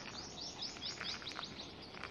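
A small bird calling in a quick series of short, high chirps, about five a second, with a few faint clicks underneath.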